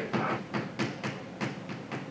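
Chalk on a blackboard during writing: a quick, irregular run of short taps and clicks, about six or seven in two seconds.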